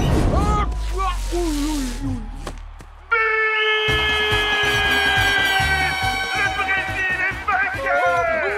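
A referee's whistle blown in one long high blast of about two seconds, over a loud held chord of cartoon music that starts suddenly about three seconds in. This is the whistle that ends the match. Before it come a falling whistling tone and short cartoon vocal sounds.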